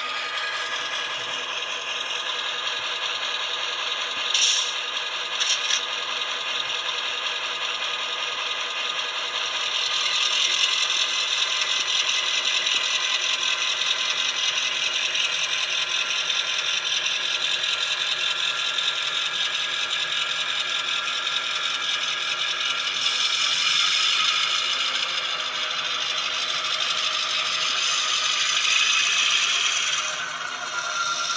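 The sound decoder in an N scale EMD SD7 is playing an EMD 16-cylinder 567C two-stroke diesel prime mover through a tiny 8x12 mm speaker as the model runs along the track. The engine sound is steady and has little bass, and it grows louder about ten seconds in. Two short, sharp sounds come about four and a half and five and a half seconds in.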